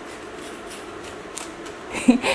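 Pizza wheel rolling through a thin, crisp pizza crust, a steady crunching with faint crackles, picked up on a poor-quality microphone.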